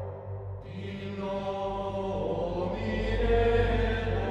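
Gregorian-style chant: voices singing slow, held lines in unison over a low, steady drone. The voices enter about a second in and swell toward the end.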